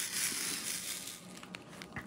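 A dry rustling hiss of resin diamond-painting drills shifting in a plastic drill tray as it is handled. It fades away about a second and a half in.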